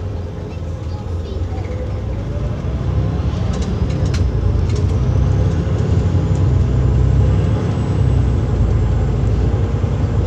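Motor vehicle traffic: an engine running with a whine that rises in pitch as it speeds up, over a heavy low rumble that grows louder about three seconds in.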